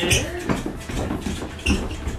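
Footsteps and shoe scuffs on a wooden floor as several people move about, with a few sharp knocks and faint voices underneath.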